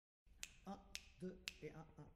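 Faint finger snaps, three in a steady beat about half a second apart, with quiet sung fragments between them, counting in a song.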